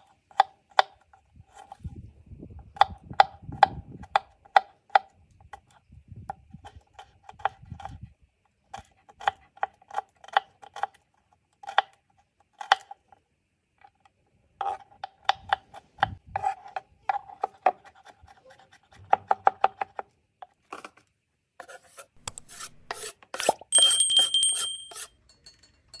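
Kitchen knife chopping garlic cloves on a wooden cutting board: runs of quick knife strikes on the wood, each a short ringing knock. Near the end, a louder, denser burst of sharp clicks.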